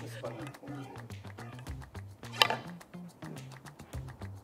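A billiard cue tip striking the cue ball for a carom (three-cushion) shot: one sharp click about two and a half seconds in, over quiet background music.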